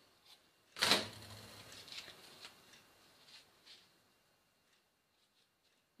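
Handling noises as a cotton-gauze test-tube plug and thread are worked by hand: a sudden knock-like sound about a second in, then soft rustles and light clicks that stop after about four seconds.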